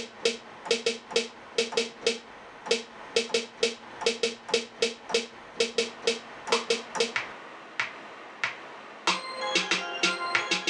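Programmed snare sample from a beat in a DAW, played back over studio monitors: sharp hits in a quick, repeating pattern. The loop stops about seven seconds in, two lone hits follow, and about nine seconds in held synth notes come in along with the hits.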